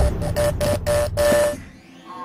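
The tail of an electronic intro jingle: one steady tone chopped into short stuttering pulses, several a second, over a low rumble, cutting off about a second and a half in and leaving only faint room sound.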